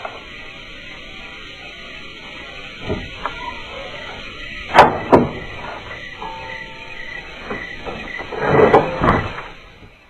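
Film soundtrack of a door being pushed open over faint background music: two sharp knocks about five seconds in, then a longer clatter of hits near the end.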